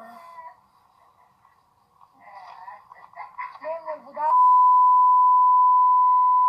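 Talking, then a loud, steady single-pitched censor bleep that starts about four seconds in and holds, in the way reality-TV edits cover a swear word.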